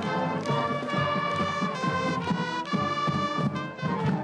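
School band of clarinets, flutes, saxophones and brass playing a tune live, with sustained chords over a steady percussive beat.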